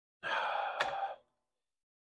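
A man's sigh: one breathy exhale lasting about a second, with a sharp click partway through.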